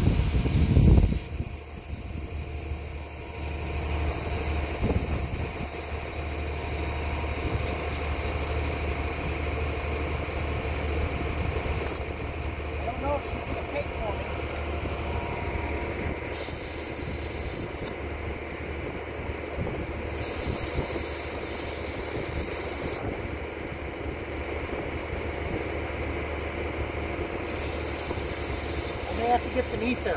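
Compressed air hissing from an air chuck as a deflated pneumatic wheel tire is inflated to seat its bead on the rim. The hiss cuts in and out several times over a steady low hum.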